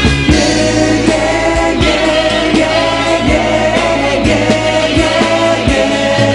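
Hard rock recording with sustained, wordless choir-like vocal harmonies held over the band and drum hits. Just after the start the pulsing bass line drops away, leaving the held chords.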